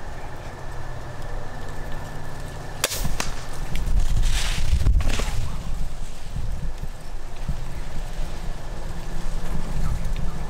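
A single sharp snap about three seconds in, fitting a crossbow being fired at a deer. Several seconds of louder, rough, low noise with a few sharp rustles follow.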